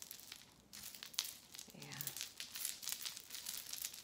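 Small clicks and rustles of a tangled beaded chain necklace being handled in the fingers, with a brief murmur about two seconds in.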